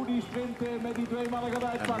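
A man's voice holding one long, drawn-out syllable at a steady pitch: the race commentator stretching out "en…" before his next sentence.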